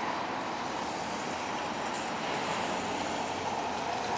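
Steady road traffic noise, an even rushing sound with no separate events.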